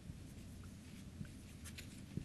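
Marker pen writing on a whiteboard: faint strokes, with a few short sharper strokes about three-quarters of the way in.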